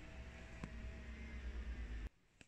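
Faint steady hiss over a low rumble of background noise, with one soft click about two-thirds of a second in.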